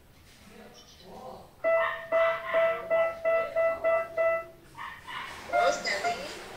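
A piano playing a short run of detached notes, mostly repeating one pitch, for about three seconds starting about a second and a half in, heard over a video call.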